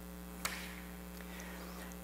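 Steady electrical mains hum on the recording, with a single faint click about half a second in.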